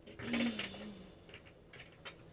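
A woman's short hummed or held 'mm' sound lasting about a second, followed by a few faint soft clicks as a tarot deck is handled.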